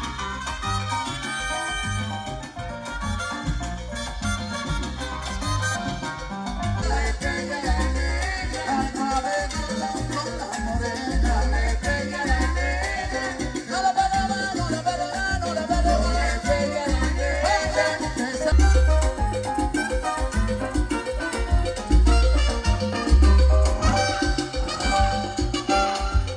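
Live salsa band playing through the stage loudspeakers, with congas and a deep, moving bass line.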